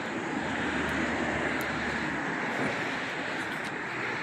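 Steady distant engine drone over outdoor background noise, swelling slightly in the first couple of seconds.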